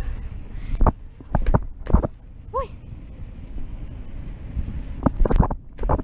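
Bicycle coasting downhill with wind rumbling on the microphone and sharp knocks and rattles as the bike jolts over the uneven road. A quick cluster of knocks near the end marks the bike hopping a pothole.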